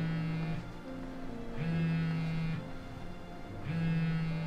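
A mobile phone vibrating for an incoming call, buzzing in about one-second bursts roughly two seconds apart, three buzzes in all, over soft background music.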